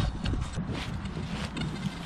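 Rustling and scuffing of gloved fingers rubbing soil off a freshly dug coin close to the microphone, with an irregular low rumble and a few soft knocks.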